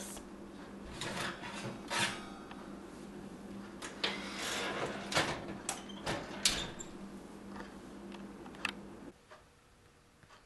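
Metal baking sheet being pulled out of an electric oven on its wire rack and lifted out with an oven mitt: a run of scrapes, clinks and knocks over a steady low hum. The hum and handling stop about nine seconds in.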